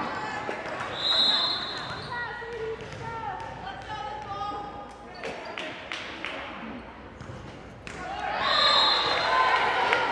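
Volleyball rally in an echoing gym: a short shrill referee's whistle about a second in, several sharp ball contacts in the middle, then a swell of cheering and shouting with another whistle near the end as the point is won.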